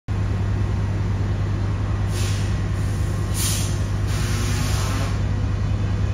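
Metrolink F125 diesel locomotive idling with a steady low hum, then three hissing blasts of air at about two, three and a half and four seconds in. The middle blast is loudest and the last runs longest. It is an unfamiliar air release from the locomotive, called a fart.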